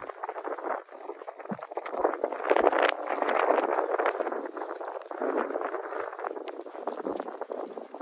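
A horse walking through snow, its hooves crunching unevenly, mixed with footsteps crunching in the snow close by.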